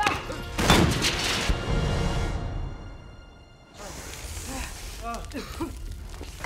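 A loud crash about half a second in, lasting about a second, followed by a high ringing that fades away over a few seconds, with film score underneath.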